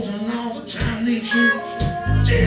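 Live band playing a Motown-style soul song: drum beat, electric guitar and keyboards, with a sung vocal line.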